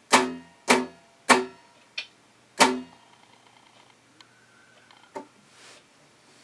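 A guitar strumming a chord in a counted rhythm of quarter, quarter, half, then quarter note: two strums about 0.6 s apart, a third left ringing, then a last strum about 2.5 s in, with a light brush of the strings just before it. After that the strings rest and only faint small sounds are left.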